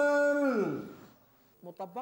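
A man's voice chanting the Islamic call to prayer (adhan) into a microphone, holding the end of a long note that slides down in pitch and fades away about a second in.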